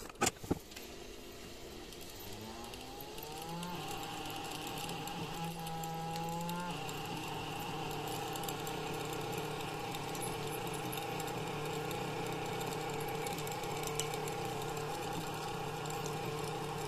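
Liquid-nitrogen-cooled stepper motor on a Trinamic StealthChop driver, whining upward in pitch as it is accelerated during the first few seconds. It then hums steadily at the speed where its resonance sets in.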